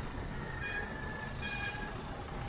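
Street traffic noise, with a thin, high squeal lasting about a second in the second half, typical of vehicle brakes as traffic slows.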